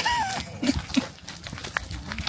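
Reindeer walking on a gravel track: scattered hoof steps and clicks, with two short low sounds about two-thirds of a second and one second in. A brief high wavering call comes right at the start.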